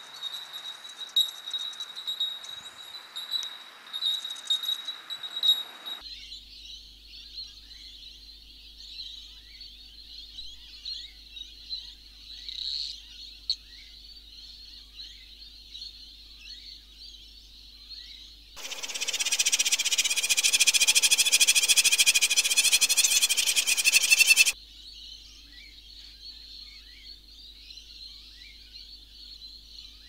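A nature soundtrack of small animals calling: a dense chorus of many short, high chirps. It opens with a steady high ringing tone for about six seconds, and a much louder buzzing chorus cuts in about 18 seconds in and cuts off suddenly some six seconds later.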